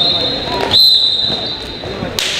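Referee's whistle blown in two blasts: a short one, then a longer, louder one from under a second in, with players' and spectators' voices underneath.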